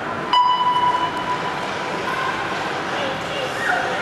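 A single sharp signal tone that starts with a click and rings at one pitch, fading over about two seconds, over voices in a large echoing hall.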